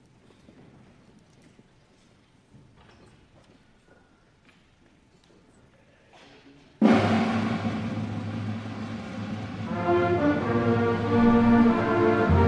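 A hushed, standing crowd with only faint rustling, then about seven seconds in a high school concert band starts the national anthem with a sudden loud timpani roll and full brass and woodwind chords that swell toward the end.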